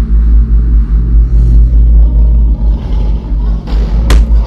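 Loud, deep, steady rumbling drone with a low hum, with a hiss that swells near the end.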